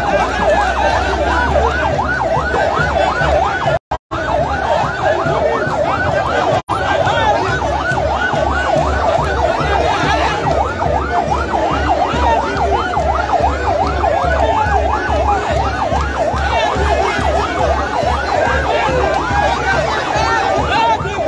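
Electronic siren in a fast yelp, several rising-and-falling whoops a second, sounding over the noise of a large crowd. It cuts out briefly twice in the first seven seconds.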